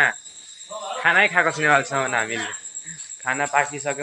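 Crickets trilling steadily in the background, an unbroken high-pitched tone, under a man talking.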